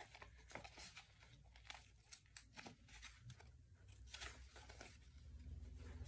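Faint rustling and light taps of paper sheets being handled and turned over.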